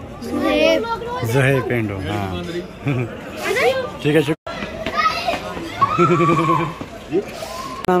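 Children's voices talking and calling out over each other, with a brief dropout about halfway through.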